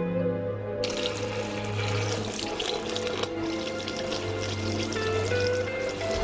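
Soft background music with slow held notes, over water running steadily from a tap into a sink, starting about a second in.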